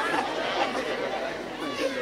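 Low background chatter of several voices.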